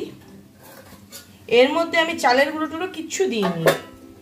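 A metal spoon scraping and clinking against a steel bowl of mashed food. A woman's voice sounds briefly in the middle and is the loudest part, and there are a couple of sharp clinks near the end.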